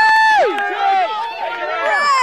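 Several people shouting and cheering over each other, one voice holding a long high call for about half a second at the start.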